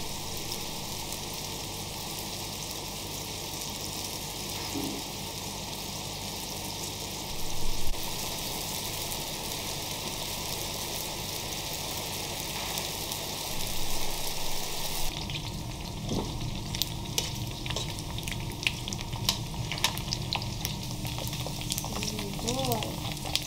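Pieces of beef fat frying in a black iron pan over a gas flame, a steady sizzle as the fat renders out into the pan. There is a brief louder burst about seven seconds in. From about two-thirds of the way through, the sizzle turns fuller, with frequent sharp crackles and pops.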